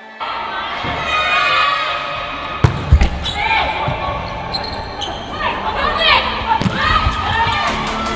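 Volleyball being played in a large indoor hall: sharp hits of the ball a little under three seconds in, as the serve is struck and play begins, then a rally with voices on the court.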